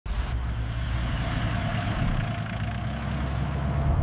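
A van driving along a road: steady engine and tyre rumble.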